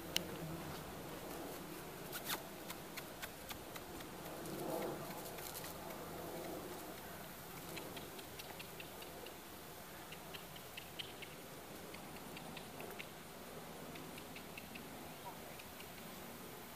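Quiet outdoor ambience: a faint steady hiss with scattered small clicks and ticks, a sharper click just after the start, and a brief faint voice-like swell about five seconds in.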